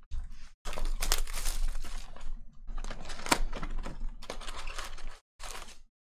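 Plastic shrink-wrap being torn and crinkled off a sealed trading-card box and its cardboard lid opened: a run of rustling, tearing bursts with short gaps and one sharp crack a little past the middle.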